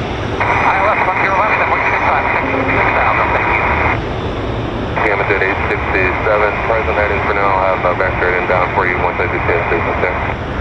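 Air traffic control radio transmissions with a tinny, cut-off sound, two of them with a short break about four seconds in. Under them runs a steady low rumble of a Boeing 777 freighter's jet engines on the runway.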